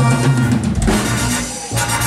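A live band's Pearl drum kit and bass guitar playing the closing beats of a Latin song, with drum hits over low bass notes. The sound drops about a second and a half in, and one more hit follows near the end.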